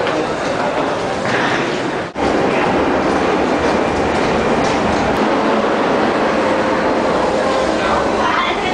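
Metro train noise in an underground station: a steady, dense noise with people's voices mixed in. The sound drops out briefly about two seconds in.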